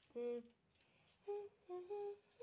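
A person humming a tune in short held notes: one note near the start, then three short notes later on.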